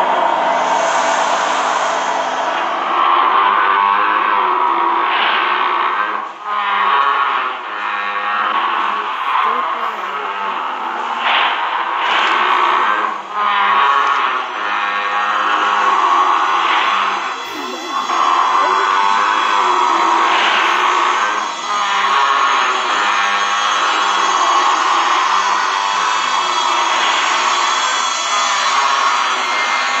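Horror film soundtrack music playing continuously, with a few brief dips in loudness.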